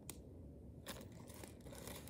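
Faint crinkling of a small clear plastic bag of beads being handled, with a soft rustle near the start and another about a second in.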